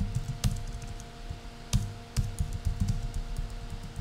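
Typing on a computer keyboard: a fast, irregular run of keystrokes, several a second, as a short sentence is typed and a misspelt word corrected.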